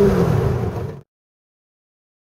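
Twin-turbo 572 cubic inch big-block V8 of a 1969 Camaro, heard from inside the cabin, running at a cruise with a steady drone that drops slightly in pitch, then fades out to silence about a second in.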